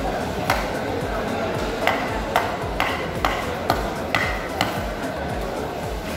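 Large knife chopping into a tuna head on a wooden chopping block: about eight sharp strikes with a short ring, most of them coming roughly every half second, over background music.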